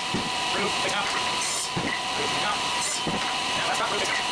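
SawStop table saw running steadily as a push block feeds a wooden side piece over the blade, cutting a shallow groove, with an even hiss and a steady tone throughout. The footage is sped up four times.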